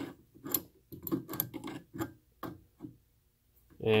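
Irregular light metallic clicks and taps of small adjustable wrenches being set and adjusted on the brass hose nut of an oxygen regulator, stopping about three seconds in.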